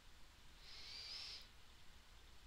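A single faint breath close to a headset microphone: a soft hiss with a slight wavering whistle, lasting under a second around the middle, otherwise near silence.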